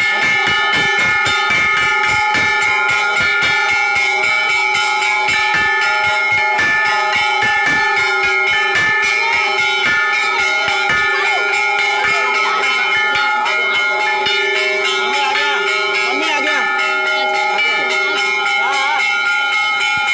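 Hanging temple bells struck over and over by devotees, clanging several times a second so that the ringing never dies away. A crowd of voices runs underneath, clearer near the end.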